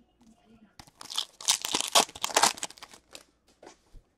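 A trading-card pack wrapper being torn open and crinkled by hand: a rapid run of papery crackles from about one to three seconds in, then a few light ticks of cards being handled.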